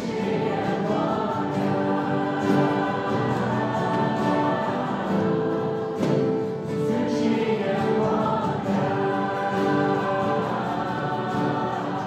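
A group of mixed male and female voices singing a Hungarian worship song together over several strummed acoustic guitars, with sustained sung notes and a steady strum.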